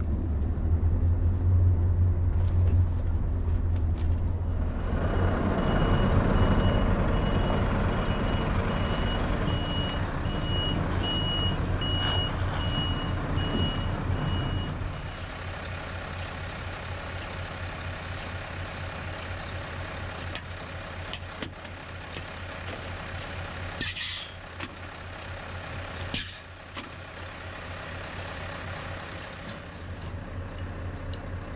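Scania S650 V8 truck engine running, louder for about ten seconds while the reversing alarm beeps about once a second as the truck backs up. The engine then idles more quietly, with two short hisses of air near the end.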